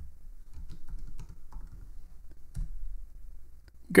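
Computer keyboard keys clicking lightly and irregularly, over a faint low hum.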